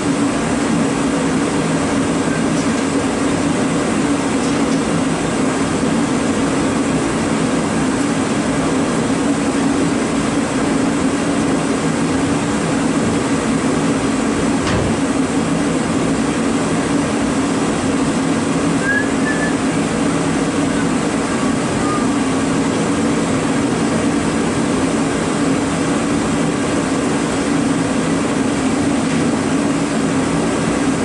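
A steady, unchanging mechanical drone with a low hum, with a single faint knock about halfway through.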